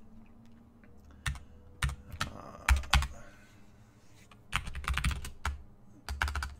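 Computer keyboard typing in short irregular runs of keystrokes, with a pause in the middle and a quicker flurry near the end.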